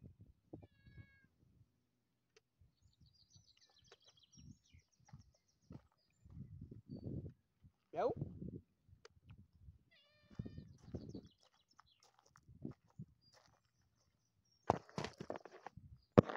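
Domestic tabby-and-white cat meowing several times, one louder rising meow about eight seconds in, with low rustling and a brief louder rustle near the end.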